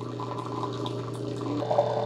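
A Keurig K-Iced brewer running a 12-ounce fresh-water rinse cycle in descale mode: a steady stream of water pours into a glass measuring cup over the machine's constant low hum.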